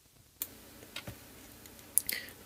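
A few short, sharp clicks from the buttons of a Logitech M560 wireless mouse as they are pressed, about three over a second and a half, the last the loudest.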